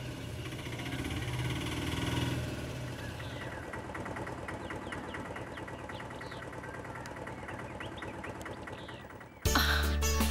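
Auto-rickshaw engine idling steadily with a fast, even pulse, with a few faint bird chirps in the middle. It is cut off just before the end by music and a voice.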